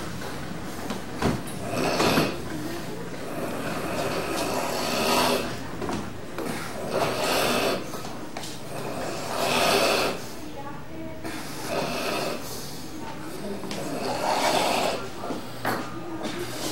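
A man's loud, snoring breaths, about six of them, each roughly a second long and coming every two to three seconds. Such noisy, labored breathing is typical of the recovery phase after a tonic-clonic seizure.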